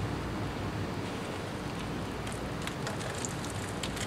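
Potting soil crumbled by hand and dropped into a plastic bottle, heard as a few faint scattered ticks over a steady outdoor hiss.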